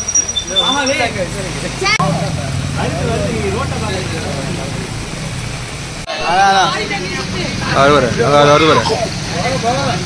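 Steady low hum of a motorcycle engine running, with voices calling out over it, loudest a little past the middle.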